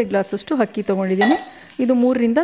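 A woman talking, with a steel spoon clinking against a frying pan of sliced onions; a short metallic ring comes a little past the middle.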